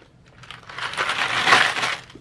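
Loose coins sliding and jingling against each other and the walls of a clear plastic coin bank as it is tilted. The jingle starts about half a second in and builds to its loudest around a second and a half in.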